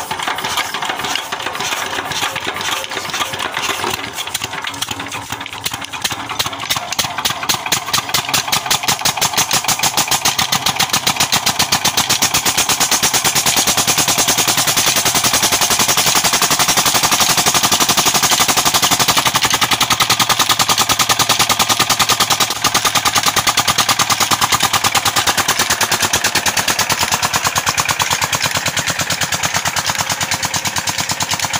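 Petter-type single-cylinder diesel engine starting up and picking up speed over the first ten seconds or so, then running steadily with a fast, even knock while driving a belt-driven irrigation water pump. It gets a little quieter near the end.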